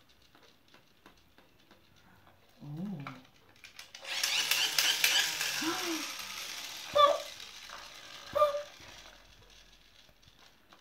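Battery-powered toy bubble gun running for about three seconds, its motor and gears whirring and rattling as it blows bubbles, followed by two sharp clicks near the end.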